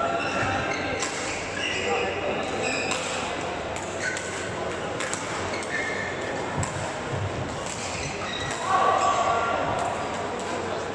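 Badminton hall ambience with several games at once: sharp racket hits on shuttlecocks, irregular and overlapping, over background voices of players and spectators, all echoing in the large hall. A louder held sound comes near the end.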